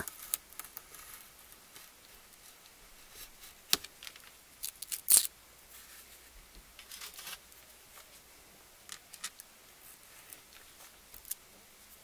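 X-Acto craft knife trimming washi tape along the edge of a wooden clothespin: scattered short scrapes and clicks, the loudest about five seconds in.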